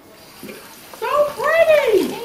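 Kitchen tap running faintly as hands are washed at the sink. In the second half a loud drawn-out voice rises and falls in pitch over it.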